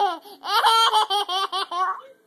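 A little boy laughing hard: a short burst at the start, then about half a second in a quick run of high-pitched laughs that stops just before the end.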